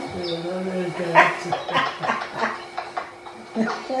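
People talking and laughing, with a run of short bursts of laughter in the middle.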